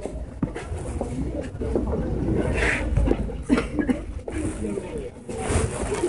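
Market ambience: indistinct voices of nearby shoppers and vendors over a steady low rumble, with a few short hissy noises.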